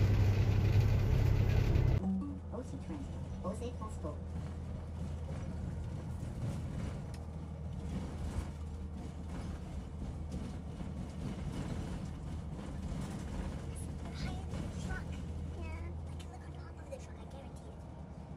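Steady low rumble of a double-decker bus in motion, engine and road noise heard from the upper deck, louder for about the first two seconds and then quieter, with faint voices in the background.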